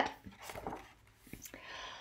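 Faint rustle and a few light taps of a hardcover picture book's paper page being turned.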